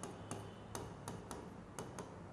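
Faint, uneven clicks, about four a second, of a pen tip tapping against an interactive writing board as figures are written.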